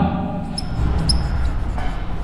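Marker pen writing on a whiteboard, with a few faint short squeaks, over a steady low hum of room noise.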